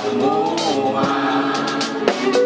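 Live band playing with sustained sung vocals from many voices together, with a couple of sharp drum hits.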